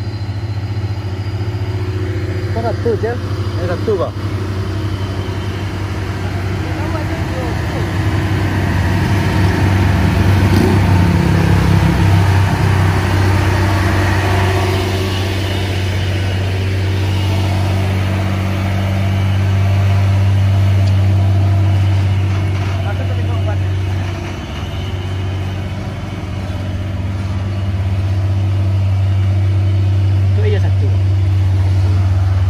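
Diesel engine of a loaded Hino tractor-trailer truck running as it comes up the road and passes close by, with a steady low drone that swells loudest about ten to fifteen seconds in.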